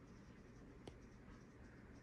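Near silence with one faint tap of a stylus tip on a tablet's glass screen a little under a second in.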